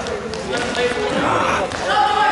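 Voices of players and spectators calling out in a gymnasium, echoing off the walls, with sharp knocks of the futsal ball being kicked and played on the hard floor.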